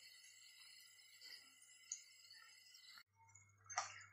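Very faint sizzle of corn-flour nacho chips deep-frying in oil on a low-to-medium flame, dropping out suddenly about three seconds in. A short click near the end.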